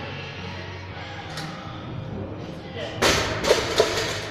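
Loaded barbell with bumper plates dropped onto rubber gym flooring about three seconds in: a loud thud followed by two quick bounces, over background music and voices.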